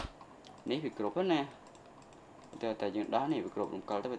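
A man's voice speaking in two short phrases, with a single sharp computer click right at the start.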